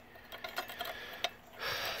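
Light metallic clicks and ticks as fingers handle a small worm-drive hose clamp on a fuel pump hanger, with one sharper click a little past halfway.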